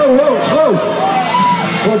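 The band's music drops away and a single voice calls out over crowd noise in a big tent, with the music coming back in near the end.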